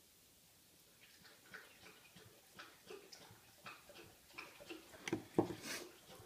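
Faint clicks and light taps of knives and cases being handled and set down on a table. They start about a second in and come more often and a little louder near the end.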